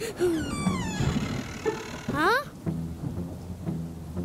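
Cartoon thunderstorm sound effects: rain and a low rumble of thunder. Over them, a whistling tone falls in pitch in the first half, and another sweeps quickly upward a little past halfway.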